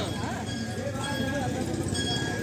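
Indistinct voices of people talking in the background, not loud, with no clear single event.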